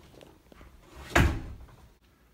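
A door banging once, a little over a second in, with a short ringing tail.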